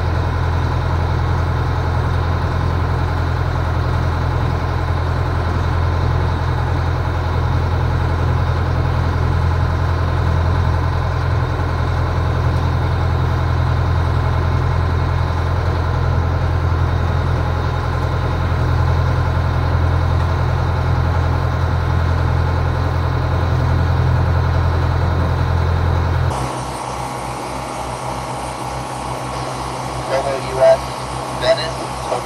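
Towboat's engine running steadily under way with a boat in tow, a loud, even, deep drone. About 26 seconds in the sound changes abruptly to a quieter, lower drone with an evenly pulsing throb.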